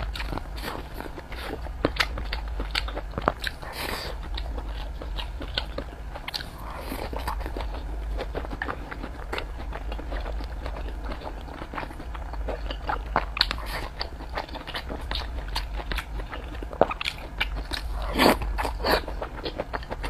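Close-miked eating sounds of a person chewing mouthfuls of rice and pork belly, with many short wet clicks and smacks throughout over a steady low hum.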